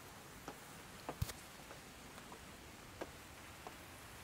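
Faint steady hiss of outdoor background with a few short, soft clicks scattered through it.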